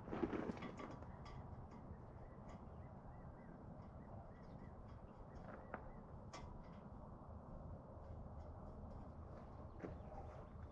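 Faint, scattered clicks and clinks of hand tools on metal as a bracket is worked loose from a tractor's frame, with a short clatter at the start. A steady low rumble runs underneath.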